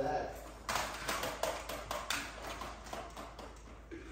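A quick, irregular run of clicks and taps, about a second in, with some faint talking.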